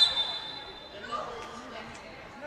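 A short, high, steady whistle blast that fades out over about a second in the hall's echo, typical of a referee's whistle stopping play, with faint shouts of players in the background.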